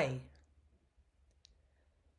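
The end of a spoken word, then a near-silent pause broken by a few faint, short clicks, the clearest about one and a half seconds in.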